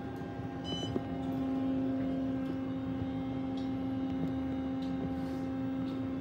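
Otis hydraulic elevator car travelling down, heard from inside the cab as a steady hum, with a short high-pitched beep about a second in.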